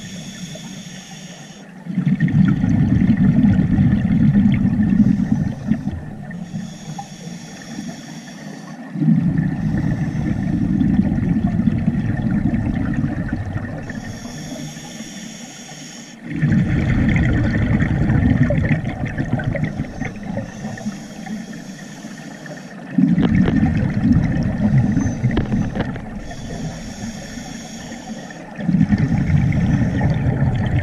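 A scuba diver breathing through a regulator underwater, five breaths about six to seven seconds apart. Each breath is a short hissing inhale through the demand valve, then several seconds of loud, low bubbling as the exhaled air leaves the regulator.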